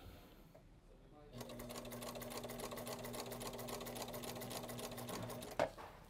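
Sewing machine starting about a second in and stitching at a fast, even rate over a steady motor hum, then stopping shortly before the end. It is running a half-inch seam that joins the vinyl boxing to the cushion's bottom plate.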